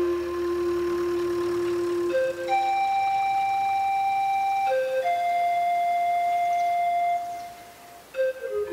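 Background music: a slow solo melody of long held notes, each about two seconds, linked by short quick grace notes, fading out near the end.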